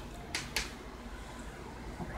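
Quiet room tone with a steady low hum, and two faint ticks in the first second.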